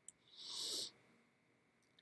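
A quick breath in by the lecturer, about half a second long, just before she starts speaking again, preceded by a faint mouth click.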